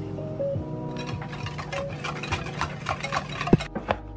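Soft background music, with a wire whisk clinking quickly and irregularly against a ceramic bowl as a runny egg mixture is beaten. There is a sharper knock near the end.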